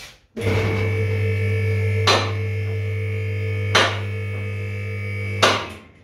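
A vehicle lift (workshop ramp) raising a van: its electric motor starts, runs with a steady hum for about five seconds and then stops. Sharp metallic clacks come about every 1.7 seconds while it climbs, three in all, the last just as the motor stops.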